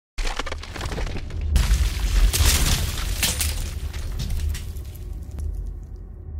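Intro sound effects of stone breaking and shattering over a steady deep rumble, with a louder crash about one and a half seconds in and a few sharp cracks after it, fading away near the end.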